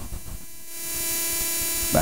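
Steady electrical hum with a hiss, made of several fixed tones, that grows louder about a second in. A brief sound near the end.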